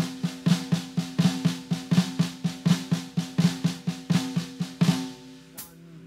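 Snare drum played with two sticks in a continuous, even run of triplets: a Swiss Army triplet variant led by the left hand, with a flam on the last note of each triplet. The run stops about five seconds in, followed by a stray stroke.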